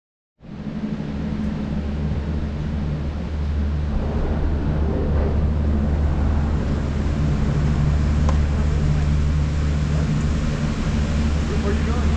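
Steady low mechanical hum of a gondola terminal's machinery running as the cabins move through the station, with faint voices in the background.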